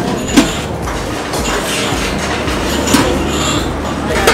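Steady low rumble of background noise with two sharp metallic clinks, about half a second in and again near three seconds, from stainless steel chafing-dish lids being handled.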